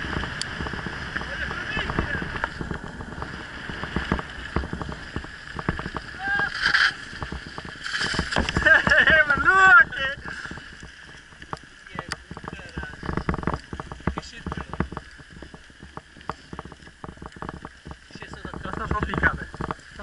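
Mountain bike rolling fast over a rough dirt track: the tyres run on the gravel, the bike rattles and knocks over bumps, and wind blows on the microphone. A rider's voice calls out loudly between about six and ten seconds in.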